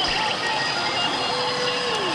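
Evangelion pachinko machine playing its electronic effects and music over the steady din of a pachinko parlour. A quick run of ticks comes near the start, and a held tone near the end begins to slide downward.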